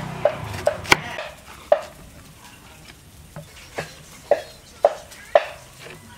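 Kitchen knife chopping through a stalk onto a thick wooden chopping board: sharp knocks, a few close together in the first second, then one about every half second near the end.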